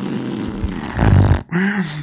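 A man's reaction close to the microphone: a loud, low burst of air on the mic about a second in that cuts off sharply, followed by a short voiced sound that rises and falls in pitch.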